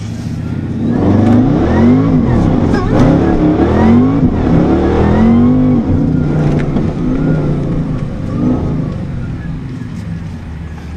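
Performance car engine revving hard, heard from inside the cabin, its pitch repeatedly climbing and dropping. It grows loud about a second in and eases off near the end.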